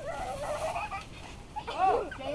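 Young children's high-pitched squeals: a wavering cry in the first second, then a louder squeal that rises and falls near the end.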